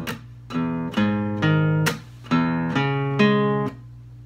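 Steel-string acoustic guitar playing a rock riff. Each of the two phrases is a single plucked low-E note followed by two-note power-chord shapes, and each is cut off by a percussive palm-muted strum.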